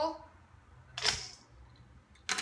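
Shredded cabbage coleslaw tipped from a glass measuring cup into a stainless steel bowl, a single brief rustling whoosh about a second in.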